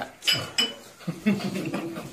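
Two light clinks close together, each leaving a brief high ringing note.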